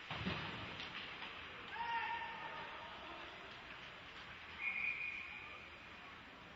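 Live ice hockey in a small arena under a steady hiss of rink noise. A single knock against the boards comes about a quarter second in. Short high shouted calls from players come around two seconds and again around five seconds in.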